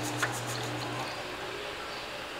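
Granulated sugar poured from a metal bowl into a pan of milk: a soft hiss and a small click in the first moments. Under it runs a low steady hum that stops about a second in.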